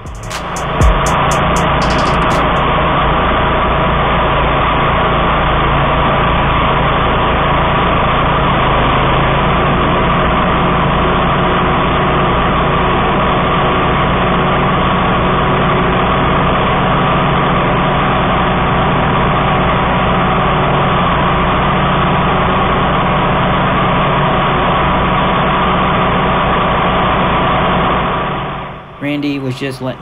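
Walk-behind brush mower engine running steadily, slowed down with slow-motion footage so it comes through as a deep, even drone. It fades out about two seconds before the end.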